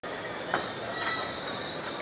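Steady harbour background noise: a constant hiss with faint high squealing tones and one sharp click about half a second in.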